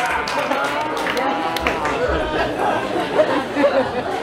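Audience chatter: several voices overlapping as a comedy crowd reacts to a joke.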